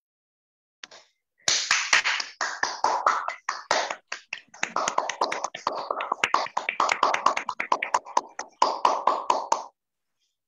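Several people clapping over a video call's audio, a dense run of sharp hand claps. It starts about a second and a half in and stops just before the end.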